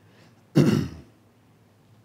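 A man clearing his throat once: a short, rough burst a little over half a second in.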